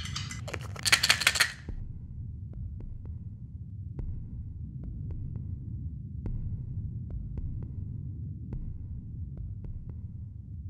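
Low, steady throbbing rumble with faint scattered clicks. About a second in, a short loud burst of rattling clicks as a small bottle is handled and opened.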